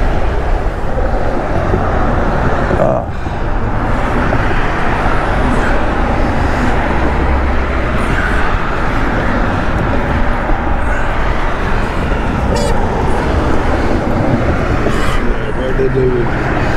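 Steady, loud noise of nearby road traffic, with a brief lull about three seconds in.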